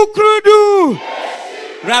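A man shouting long, drawn-out rallying calls in a call-and-response party chant: about three loud calls, each dropping in pitch as it trails off, followed by a brief crowd response before the next shouted chant starts near the end.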